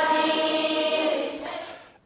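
A group of children chanting in unison, holding one long note that fades out near the end.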